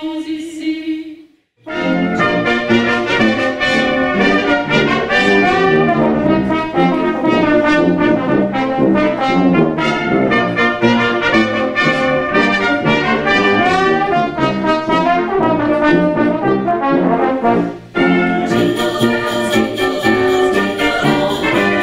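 A brass quintet of trumpets, horn, trombone and tuba playing a lively, fast-moving passage. It cuts in after the end of a held chord sung by women's voices and a short gap. Near the end it cuts abruptly to a brighter passage.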